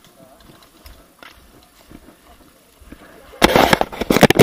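Faint background sound, then from about three and a half seconds in a loud, dense crackling of handling noise as the hand-held action camera is gripped and turned around.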